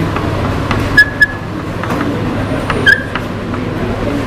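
Chalk writing on a chalkboard: a few sharp taps with brief squeaks, about a second in and again near three seconds, over a steady low background hum.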